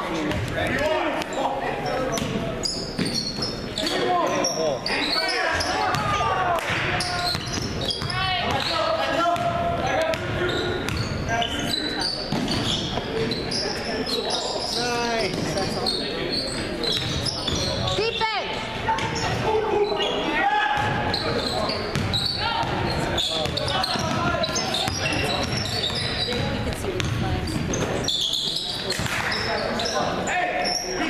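A basketball dribbling and bouncing on a hardwood gym floor during play, mixed with indistinct voices of players and onlookers.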